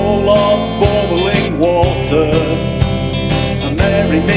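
Rock band music: drums keep a steady beat under bass and electric guitar, with a wavering melody line on top.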